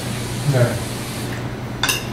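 Fork clinking against a plate while eating: a sharp, ringing clink near the end.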